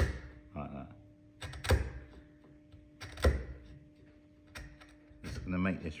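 A hand-held chisel paring down into the shoulder of a softwood tenon to trim it to a pencil line, with two sharp knocks about a second and a half apart as the blade is pressed into the wood. A faint steady hum sits underneath.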